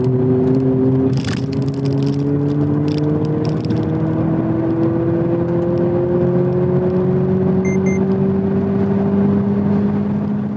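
Abarth 500e electric hatchback driven flat out, heard from inside the cabin: the steady drone of its artificial engine-sound generator, several tones rising slowly in pitch as the car gathers speed, over tyre and road noise. A brief high double beep sounds about eight seconds in.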